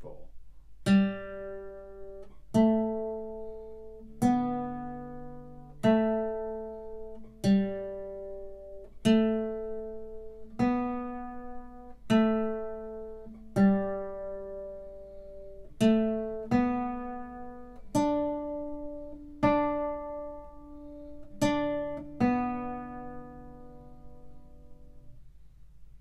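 Nylon-string classical guitar playing a slow accompaniment part. Single plucked notes and dyads come on a steady pulse about every second and a half, each ringing and fading before the next. The last note rings out and fades away near the end.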